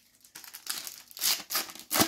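A Panini Adrenalyn XL foil trading-card packet being torn open and crinkled by hand, in a run of crackling bursts that begins about a third of a second in and grows louder toward the end.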